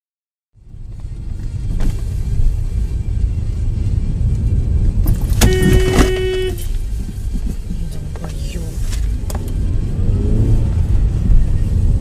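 Car interior road and engine rumble recorded by a dashcam while driving in city traffic, loud and steady, starting suddenly about half a second in. Near the middle, a steady pitched tone sounds for about a second.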